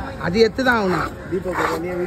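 Speech: a person's voice talking throughout, with no clear knife strokes standing out.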